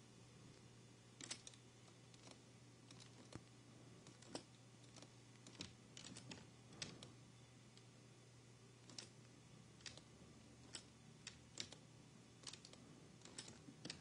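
Faint, irregular clicks of a computer keyboard and mouse being worked, over a steady low hum.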